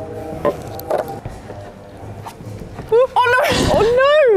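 A climber comes off an indoor bouldering wall and lands on the padded floor near the end, a short dull impact with a brief vocal cry just before and after it. Earlier there are a couple of light knocks of hands or shoes on the holds, over faint background music.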